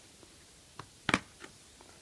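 Light plastic clicks from a locking Blu-ray case as its tab is pulled down and the case is unlatched and opened: a few short clicks, the sharpest about a second in.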